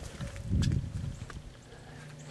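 Footsteps on a concrete pad and grass, with a dull low thud about half a second in and a few faint clicks of camera handling.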